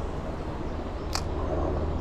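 Steady noise of flowing creek water, with one sharp click just over a second in.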